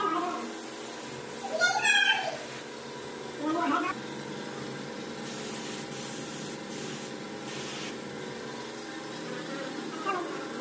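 Two short meow-like calls from a cat in the first four seconds, then three brief hisses of a paint spray gun over a steady background hum.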